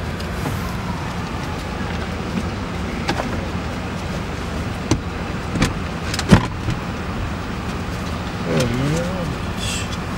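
Steady low rumble of a car engine heard inside the vehicle's cabin, with a few sharp clicks around the middle, the loudest about six seconds in. A brief voice is heard near the end.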